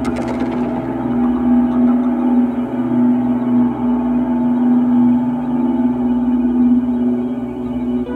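Dark ambient music: a low, steady drone of sustained tones, with a single gong-like strike right at the start that rings on and fades.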